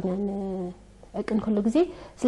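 A woman speaking in Tigrinya. She holds a long drawn-out vowel for nearly a second, pauses briefly, then goes on talking.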